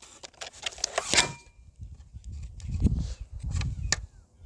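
Rustling and small plastic clicks close to a clip-on microphone as a pair of sunglasses is unfolded and put on. The clicks fall mostly in the first second or so, and low rumbling handling noise follows in the second half.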